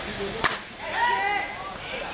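A single sharp crack of a cricket bat striking the ball, followed about half a second later by a player's brief shout.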